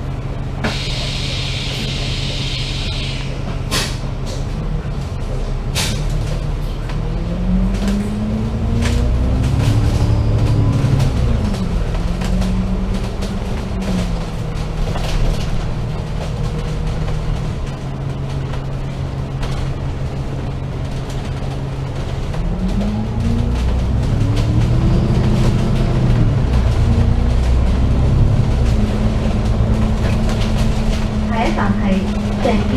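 Double-decker bus pulling away from a stop, heard from on board: a short hiss of compressed air near the start, then the diesel engine's drone rising in pitch as the bus accelerates, dropping back and rising again later on. Sharp rattles and clicks from the bus body sound throughout.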